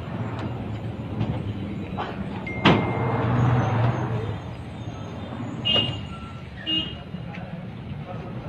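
A truck engine running with a steady low hum; about three seconds in there is a sharp bang, the loudest sound, after which the engine hum swells and then fades out a second or so later.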